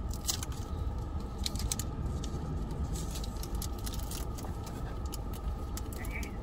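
Steady low hum of a car idling, heard from inside the cabin, with scattered light clicks and crinkles from a COVID-19 test kit's packaging being handled.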